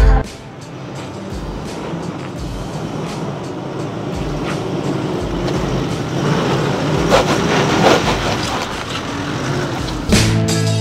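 A 4WD dual-cab ute's engine working as it climbs a bare rock slab, growing louder as it approaches and passes close by, loudest about seven to eight seconds in.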